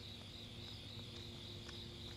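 Chorus of night insects, a steady pulsing high trill, over a faint low hum.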